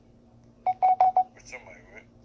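Audio of a short video clip played through a phone's small speaker: four quick high-pitched beeps in a row, then a brief warbling, voice-like sound.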